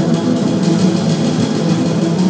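Two acoustic double basses playing an improvised jazz duet, their low notes overlapping into a dense, continuous drone-like texture.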